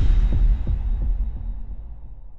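Intro logo sound effect: a deep bass hit at the start, followed by a few throbbing low pulses that fade away.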